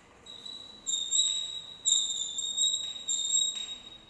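Chalk squeaking against a chalkboard while a word is written: several short, high, thin squeals in a row that stop shortly before the end.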